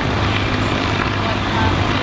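Road traffic passing on a busy road: a steady rush of vehicle noise with a low hum underneath.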